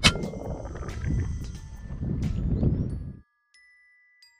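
A single sharp shot from a .22 PCP air rifle (FX Impact X) at the very start, with a brief ring after it, followed by wind rumbling on the microphone. A little after three seconds the sound cuts out abruptly and a few faint chiming tones follow.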